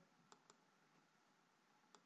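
Near silence, with three faint clicks: two close together early on and one just before the end.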